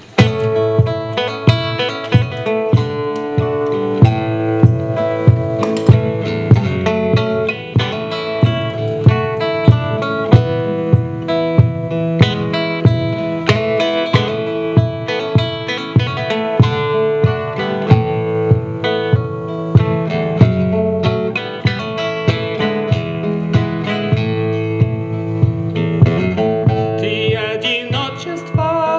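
Acoustic guitar strummed in a steady, even rhythm, about one and a half strums a second, playing the instrumental introduction of a song.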